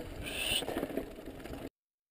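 Low outdoor rumble on a helmet-camera microphone with a faint high sound about half a second in. It cuts off abruptly to silence shortly before the end.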